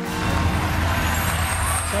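Studio audience applause, a dense even clatter over a low rumble, starting abruptly as the intro music cuts off.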